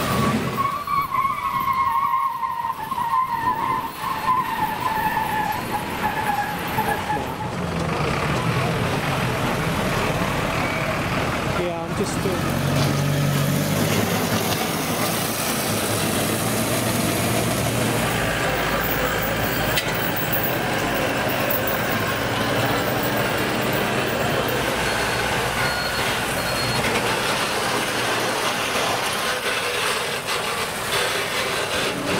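Recovery trucks' engines running as they tow wrecked banger cars past, with a whine that falls in pitch over the first several seconds and a steady low engine hum later on.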